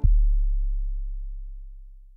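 A single very deep bass note ending the song: it starts sharply, loud and pure, with no other instruments, and fades away slowly.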